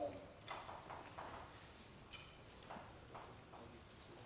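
Chalk on a blackboard: faint, irregular taps and short scratches as someone writes, a few strokes a second.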